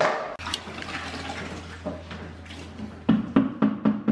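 Water rushing into a horse's stall drinking bowl as the horse drinks from it, over a steady low hum. From about three seconds in, a fast run of low knocks, about six a second.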